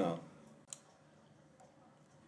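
A single sharp click a little under a second in, as the lecture presentation advances to the next slide. Otherwise near silence after the end of a spoken word.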